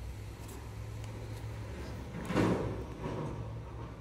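Steady low hum, with one brief, soft rubbing and handling sound a little past halfway as a clear jelly nail stamper is handled in a gloved hand and brought onto the fingernail.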